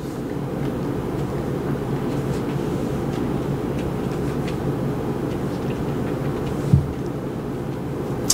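A steady low rumble, like a vehicle or machinery running, holding an even level throughout. There are a few faint light ticks, and a brief low bump about seven seconds in.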